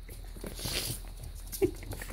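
A puppy giving a short, soft whimper near the end.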